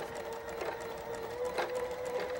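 Electric sewing machine running steadily, sewing a regular-length straight stitch through linen with a double wing needle: a faint even hum with light ticking from the needle strokes.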